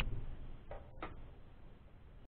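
A sharp click at the very start, then two faint short ticks about a second in, over a low hum that fades away.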